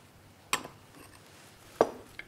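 Two short knocks of kitchen utensils, a faint one about half a second in and a louder one near the end.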